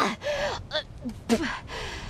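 A woman retching and gasping, with two loud heaves about a second apart and short strained groans between them.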